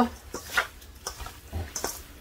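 Hands mixing seasoned raw chicken pieces in a stainless steel bowl: a few short, irregular wet handling noises.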